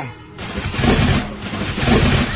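A sound effect of a motorised power chair starting up, a mechanical motor sound that builds in loudness from about half a second in, mixed with music.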